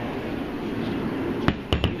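Steady background noise, then about one and a half seconds in a sharp knock followed by a quick cluster of knocks: a steel axe head being handled and set down on a tabletop.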